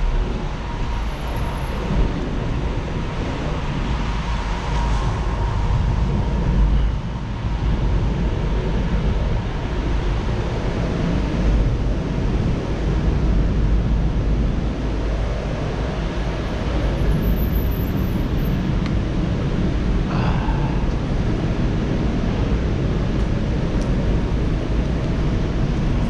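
Bicycle rolling over a concrete garage floor: a steady low rumble of tyres mixed with wind buffeting the microphone. A faint steady whine sits under it for the first several seconds.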